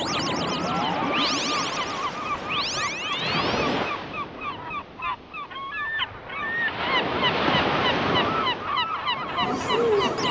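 A flock of birds calling, many short honking calls overlapping throughout. Three rising sweeps in the first few seconds.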